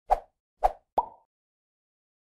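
Three quick pop sound effects, the first two about half a second apart and the third following sooner, the last with a brief ringing tone: an animated logo intro's sound effect.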